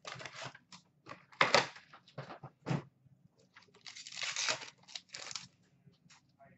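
Cardboard hockey card box being torn open by hand and its wrapped packs pulled out, giving a string of irregular tearing and crinkling noises. The loudest rips come about a second and a half in and again near the three-second mark, with a denser run of rustling a little past the middle.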